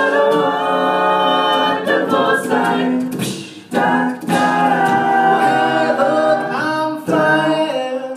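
Mixed-voice a cappella group singing into microphones, several voices holding sustained chords in harmony, with brief breaks between phrases.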